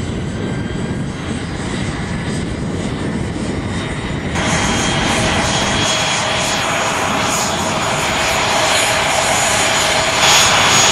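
Jet aircraft engine running steadily. About four seconds in the sound changes abruptly to a louder, brighter whine with steady high tones.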